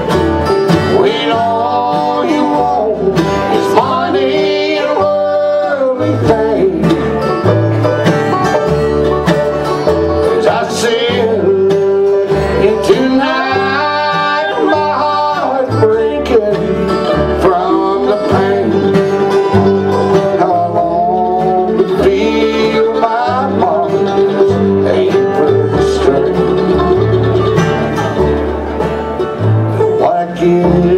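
Live bluegrass band playing a song, with banjo, mandolin, acoustic guitar and upright bass, and a fiddle joining near the end.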